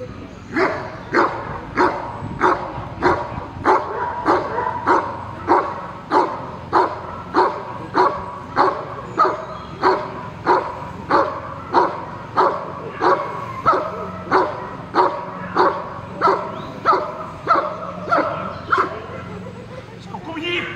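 Belgian Malinois barking steadily at a decoy who stands still in front of it, about one and a half to two barks a second without a break. This is the hold-and-bark part of police-dog protection work: the dog guards the helper and keeps him in place by barking rather than biting.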